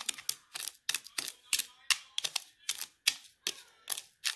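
Metal spoon scraping through a dry salt-and-sugar cure mix against the bottom of a clear dish, in short repeated strokes about three a second as the cure is mixed.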